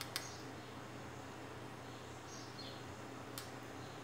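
Quiet room hum with two faint clicks, one just after the start and one a little past three seconds in, as a spring-loaded wire stripper is handled and opened. Faint high chirps come around the middle.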